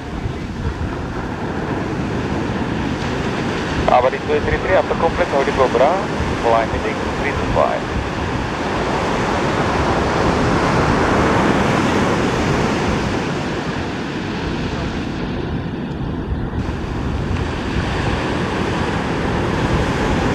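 Surf breaking against a rock breakwater, with wind buffeting the microphone. A brief burst of distant voices comes about four to seven seconds in.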